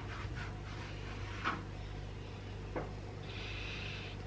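Faint rustling of grated cheese being scattered and pushed over dough by hand, a few soft brushing sounds over a steady low hum.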